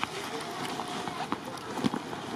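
Indistinct background voices that form no clear words, over steady outdoor noise, with a few sharp clicks.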